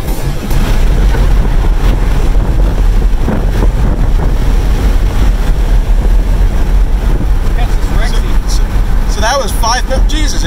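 Twin-turbo C8 Corvette's LT2 V8 heard from inside the cabin at speed: a loud, dense rush of engine, exhaust, tyre and wind noise with no clear single engine note. About nine seconds in, short whooping voices cut in over it.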